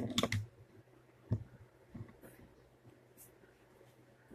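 Handling noise as a person moves right against the recording device: a few sharp clicks and knocks at the start and one more about a second and a half in, then only faint ticks over a low steady hum.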